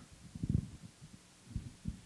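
Handling noise from a handheld microphone being picked up off a table: a few dull, low thumps, around half a second in and again near the end.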